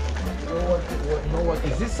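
Music with a steady, heavy bass beat, and a voice starting to speak near the end.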